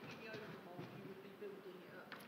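A pause between talk: quiet room tone with faint voices in the background.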